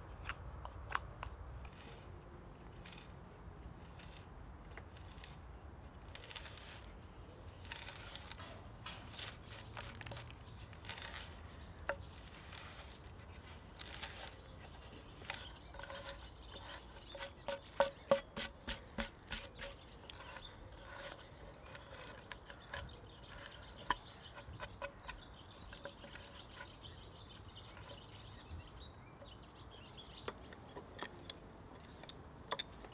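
Cedar being worked with hand tools: a knife shaving the wood and a hand auger boring into the log. It is a string of small scraping clicks and crackles, with a quick run of louder, evenly spaced cracks around the middle.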